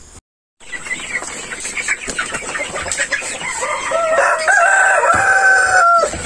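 Rhode Island Red chickens clucking and chattering in a coop, then a rooster crows: one long call, stepping up in pitch and held for about two seconds near the end. There is a brief dropout just after the start.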